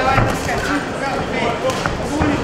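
Live ringside sound of a boxing bout: voices shouting at ringside over a few short, dull thuds of gloved punches landing.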